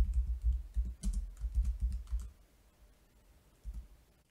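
Typing on a computer keyboard: a quick run of keystrokes for about two seconds, then a pause, with a few faint key taps near the end.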